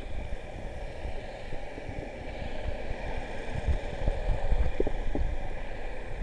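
Muffled underwater sound from a submerged camera: an uneven low rumble of water moving against the housing, with a few small knocks and gurgles and a louder stretch a little past the middle.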